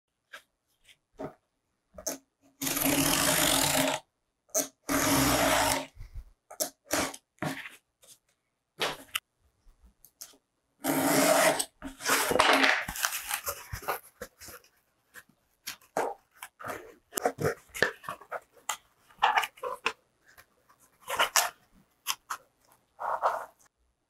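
Cardboard being scored along a metal ruler in a few long scraping strokes of about a second each, with clicks, taps and crinkles from the board being handled and folded in between.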